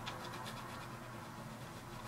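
Faint taps of fingertips typing on a smartphone's on-screen keyboard: a few soft ticks over a low room hiss.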